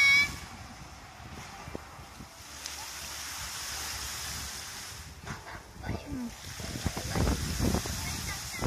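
Music fountain's water jets spraying with a steady hiss after the show's song cuts off right at the start. From about five seconds in, uneven gushes and splashes grow louder as the jets surge up again.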